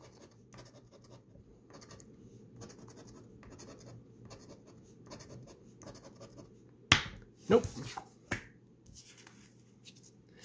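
A scratcher coin scraping the silver coating off a scratch-off lottery ticket in short, faint, repeated strokes. About 7 s in there is a sharp click, followed by another shorter click about a second later.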